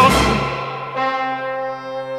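Instrumental break in a chanson's orchestral accompaniment: a held note with vibrato cuts off at the start and fades, then a sustained brass-led chord comes in about a second in and is held steady.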